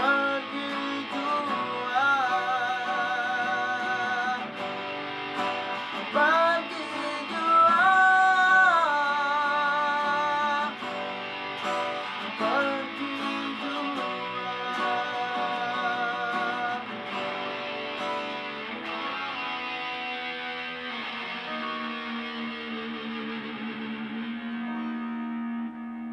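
Live acoustic guitar strumming with a red Ibanez electric guitar playing along while a man sings. The song closes on a long held chord that rings out and fades near the end.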